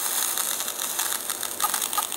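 Electromagnetic interference from a smartphone made audible through the speaker of an Ear Tool EMI detector whose sensor coil is held to the phone: a steady, dense crackling buzz made of rapid clicks, with a thin high whine over it.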